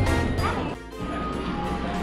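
Upbeat background music that briefly drops out about three-quarters of a second in, with a crash-like hit around the change, then carries on with a new passage.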